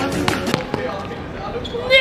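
A few sharp knocks or thumps in the first half second, then quieter, indistinct voices.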